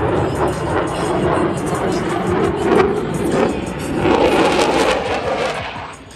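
F-16 fighter jet's engine roaring overhead, a loud rushing noise with a crackling edge, falling away sharply near the end.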